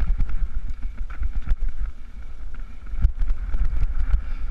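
Wind buffeting the microphone of a camera riding on a mountain bike, with rattles and knocks from the bike and its tyres rolling over a rough, stony track.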